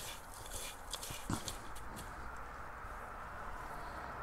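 A few light crackles and taps from handling an orchid's bare roots and picking old orchid bark and potting soil from them over a plastic bowl, all in the first second and a half, followed by faint steady background noise.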